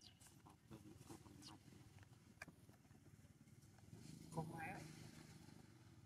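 Near silence with faint scattered clicks and rustles, and a brief voice-like sound about four and a half seconds in.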